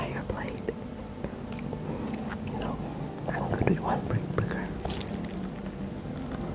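A person chewing food close to the microphone, with many small irregular mouth clicks, alongside soft whispering.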